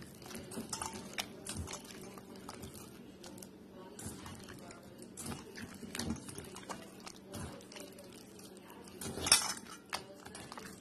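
A hand squishing and turning butter-coated biscuit dough pieces in a metal mixing bowl: irregular soft squelches and small clicks as fingers knock the bowl, with one louder knock against the bowl about nine seconds in.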